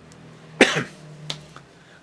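A man's single short cough about half a second in, over a faint steady low hum.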